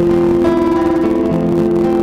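Acoustic guitar playing a song's instrumental introduction, amplified through a microphone held to the instrument, with long held notes sounding underneath.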